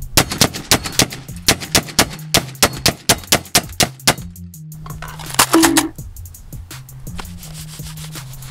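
A rapid run of gunshots, about five a second, over roughly the first four seconds, on top of hip hop music with a steady bass line; a single loud burst follows a little after five seconds.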